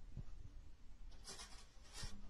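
Cats' fur and faces rubbing against the strings of an acoustic guitar, giving a soft scratchy rustle that starts a little over a second in and lasts most of a second.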